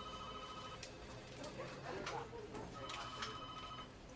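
Telephone ringing twice with an electronic trilling ring, each ring about a second long and about three seconds apart.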